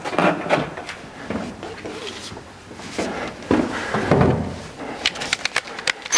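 Irregular knocks, clicks and rustles of hands working a flexible banner's bottom pole into a mobile billboard sign frame, with a longer rustle midway and a quick run of clicks near the end.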